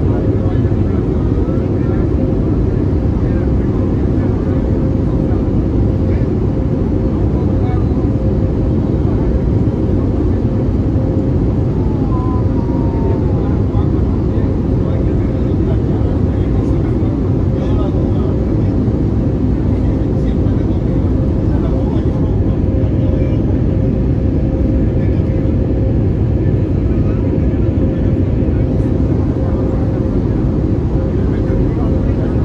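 Airbus A320neo cabin noise on final approach: a steady, loud rush of engine and airflow with a constant mid-pitched tone running through it.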